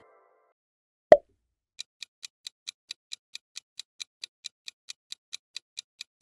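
A single sharp pop sound effect about a second in, the loudest thing here, then a fast, steady clock-ticking sound effect, about four to five ticks a second, marking a quiz countdown timer.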